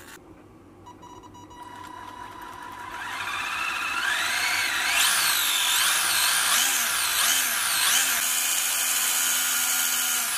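Electric whine of an RC buggy's Tamiya Torque-Tuned brushed motor and gears, spinning the wheels freely with no load. It starts faintly, climbs steadily in pitch, is revved up and down four times, then held at a steady high speed near the end.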